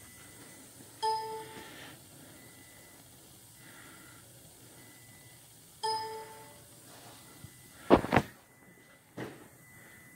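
Two short electronic chimes from a Hunter wheel alignment machine, about five seconds apart, as the front wheels are steered through the caster sweep. They mark the wheels reaching each steering position. A loud thump follows about eight seconds in.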